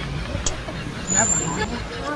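Steady low background rumble with faint voices, and a brief thin high tone a little past the middle.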